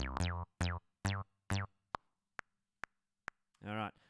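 Studio One Presence '303 Saws' synth bass playing four short notes on the beat, each starting bright and quickly falling away in a downward filter sweep, then the metronome clicking alone for four more beats at 135 BPM. A man's voice starts near the end.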